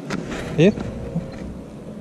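A man's brief rising vocal sound, a short wordless 'hm?'-like utterance, about half a second in, over a low rumble of wind on the microphone.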